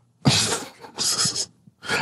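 A person laughing in two short, breathy bursts of exhaled air.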